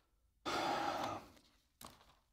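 Pages of a Bible being turned close to a pulpit microphone: a longer, louder paper rustle about half a second in and a shorter one near the end.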